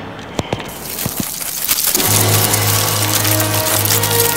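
A swarm of bugs scuttling, heard as a dense crackle of countless tiny clicks, after a few soft low thuds in the first second. A low, droning music chord comes in about halfway through.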